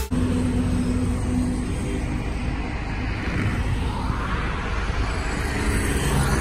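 Road traffic on a multi-lane road: a steady low rumble of engines and tyres, swelling as a vehicle goes by a few seconds in and again near the end.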